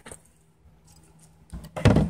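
Wooden pallet bookshelf set down onto a block ledge: a short, sharp wooden knock near the end after a quiet stretch.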